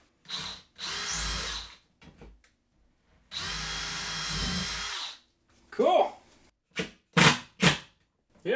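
DeWalt cordless drill running in two bursts, the first about a second long and the second nearly two seconds, driving through a metal hook rail into a wooden wall stud. A few short, sharp sounds follow near the end.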